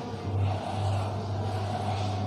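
Chalk scratching on a blackboard over a steady low hum that swells slightly about a third of a second in.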